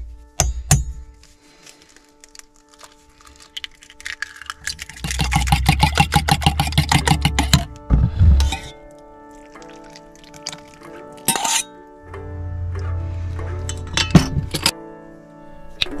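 A fork whisking egg in a small stainless steel cup: a rapid clatter of metal clinks for about two and a half seconds midway, after a few sharp knocks in the first second as the egg is cracked against the cup. Background music plays throughout.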